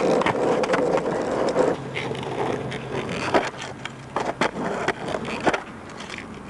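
Freestyle skateboard on a hard court: the wheels roll for the first second and a half or so, then the board's tail and deck clack and tap against the ground again and again as tricks are flipped.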